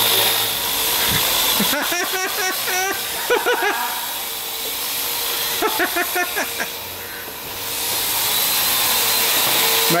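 Parrot AR Drone quadcopter in flight, its four motors and propellers giving a steady whirring hiss with a high whine. It dips in loudness briefly around seven seconds in.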